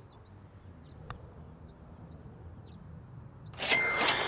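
A putter striking a golf ball: one light, sharp click about a second in. Near the end a loud rush of breathy noise sets in.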